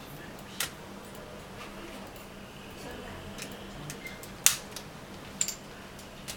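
A few small sharp plastic clicks as an opening tool pries the BlackBerry 9700's silver frame loose: its clips snapping free. The loudest click comes about four and a half seconds in, with a smaller one just after.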